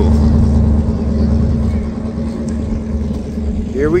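A motor vehicle engine running at a steady, even low pitch, easing off somewhat about halfway through.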